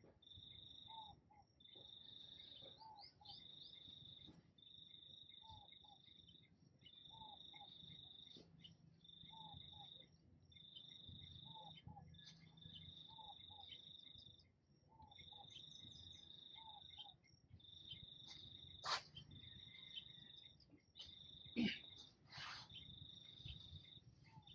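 A cricket trilling faintly in repeated bursts of about a second each, with short gaps between, all on one high pitch. Two sharp clicks sound a few seconds before the end.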